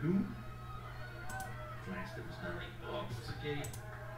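Faint, low-level speech in the background of a TV sports broadcast, over a steady low hum, with a few light clicks.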